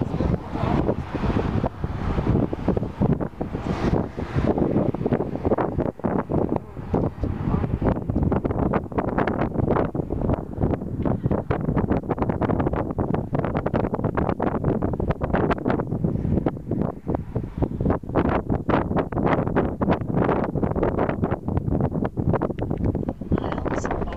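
Wind blowing hard across the camera's microphone, a loud rushing noise that flickers quickly in gusts.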